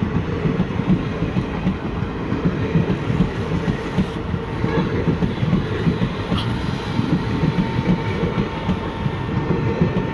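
Passenger train coaches rolling past close by, their wheels rumbling and clattering over the rails at a steady level.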